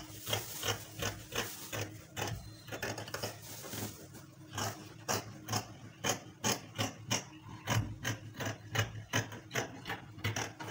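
Scissors snipping through fabric along a chalked cutting line, a steady run of cuts at about two to three snips a second.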